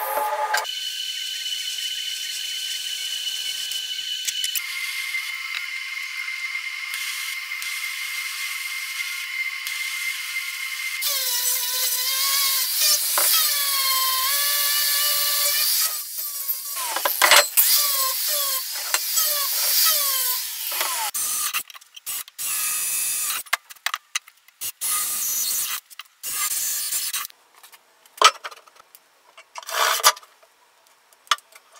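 A TIG welding arc on steel tube hisses with a steady high whine for the first ten seconds or so. Then a hand-held angle grinder runs against the steel, its pitch dipping and recovering as it bites. In the last third a cordless drill drives screws in short bursts.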